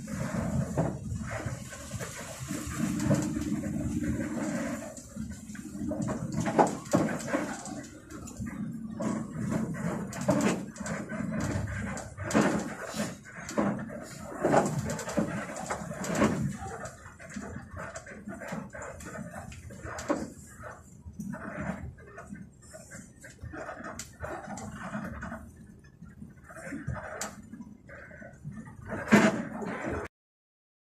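Bus cabin noise while creeping over a rough, partly unpaved road: the engine running under irregular rattles and knocks from the body and fittings as it bumps along.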